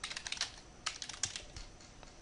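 Computer keyboard typing: a quick run of keystrokes in the first half second, then a few single key presses about a second in.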